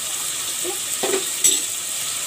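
Chopped vegetables and ground spices frying in oil in a metal pot, with a steady sizzle as they are sautéed (bhuna) and stirred with a metal spoon. A single sharp metal clink comes about one and a half seconds in.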